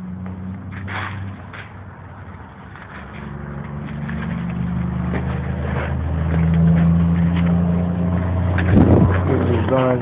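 A motor vehicle's engine running with a steady low hum that grows louder over several seconds and is loudest near the end.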